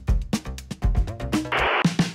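Background music with a steady drum beat. Near the end a short, loud burst of hiss cuts in briefly, like an edited transition sound.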